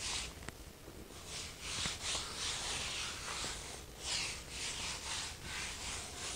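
A wadded towel wiping across a wet ceramic tile floor in repeated strokes, a soft hissing rub with each pass, about one a second.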